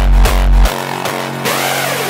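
Rawstyle hard-dance track: distorted kick drums with deep bass at about two and a half beats a second, which cut out suddenly under a second in. Synth layers and a sweeping effect carry on alone after that.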